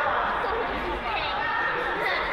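Many voices talking and calling at once, echoing in a large sports hall.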